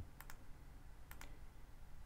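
Faint clicks from operating a computer: two quick pairs of clicks about a second apart, over a low steady hum.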